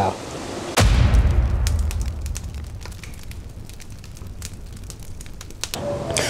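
A sudden boom about a second in, its deep rumble fading away over several seconds, with a scatter of crackling like burning fire running on after it: an edited-in boom-and-fire sound effect.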